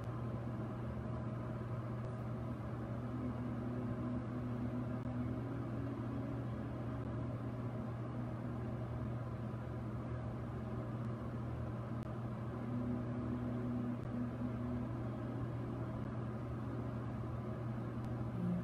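Steady low hum, with two faint held tones rising over it for a few seconds each, a few seconds in and again past the middle.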